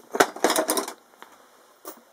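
Metal parts clinking and rattling as workshop hardware is handled: a quick run of clicks and clinks in the first second, then a single click near the end.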